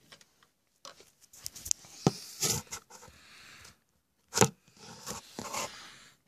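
Handling noise on the phone's microphone: rustling and scraping as the phone is moved and covered, in several short bursts, the loudest about halfway through.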